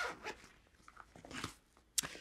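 Quiet handling of a nylon backpack side pocket as its unzipped flap is folded open: faint fabric rustles, then a short sharp click near the end.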